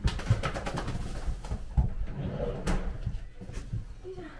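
A wet golden retriever shaking itself off: a rapid flapping of ears and fur in the first second, then a couple of sharp knocks and rustling as it moves under a towel.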